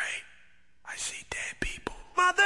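Whispered, breathy vocal sounds over faint noise at the opening of a hip-hop track, with a sharp swoosh at the start and a few short clicks in the second half.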